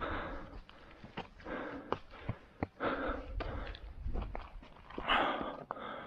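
Footsteps on a rocky trail of stone steps and loose gravel, with a short sharp click every fraction of a second, over the steady hard breathing of a hiker climbing.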